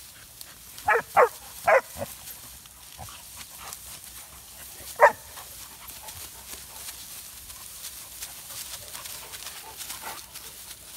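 Young mastiff-type dogs play-wrestling in long grass, giving a quick run of three short yelps about a second in and one more about five seconds in.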